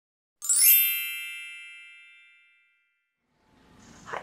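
A single bright chime rings out about half a second in, with a quick rising shimmer at its start, and dies away over about two seconds.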